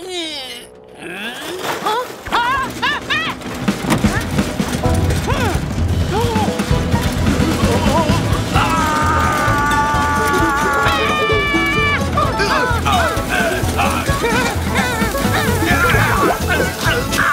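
Cartoon background music that settles into a steady beat after a few seconds. Over it come sliding pitch glides and wordless vocal sounds from a character.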